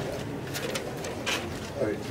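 A bird cooing, with people talking in the background.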